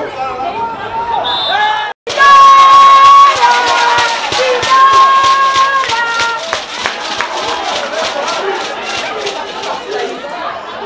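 Football crowd and sideline shouting and cheering. Mixed voices at first, then, after a brief dropout about two seconds in, long drawn-out yells ring out over a quick, even run of sharp beats.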